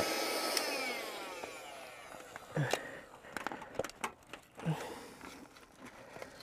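Small electric air-mattress pump switched off once the mattress is empty, its motor winding down with a falling whine over about a second and a half. Then a few scattered clicks and knocks as the pump is handled.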